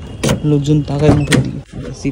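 A person's voice talking over a few sharp clicks of a key turning in a car door lock and the door latch opening.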